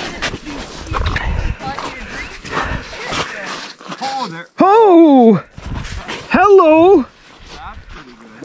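A person imitating a loon's wail: two loud howling calls in the second half, each rising then falling in pitch with a quavering wobble.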